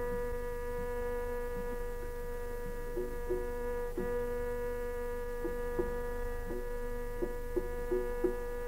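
Steady pitched drone of a Carnatic concert sounding alone without voice, with a few light, irregularly spaced percussion strokes over it from about three seconds in.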